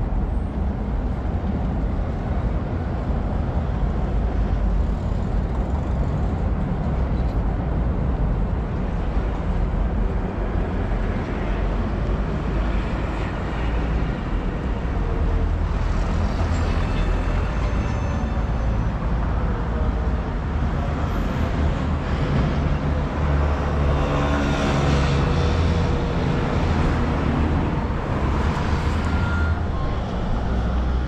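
Steady wind rumble on the microphone of a moving camera, over street traffic noise. A motor vehicle passes close by in the last third.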